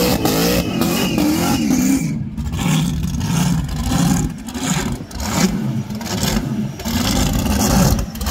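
Supercharged engine of a Holden Torana revving hard during a burnout. The revs are held high, wavering for about two seconds, then are blipped up and down several times.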